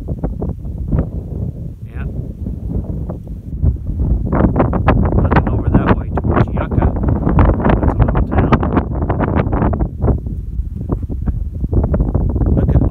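Wind buffeting the microphone: a loud, constant low rumble with crackling gusts that grow denser about a third of the way in.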